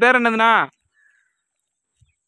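A man's raised voice calling out a short phrase for under a second, then quiet.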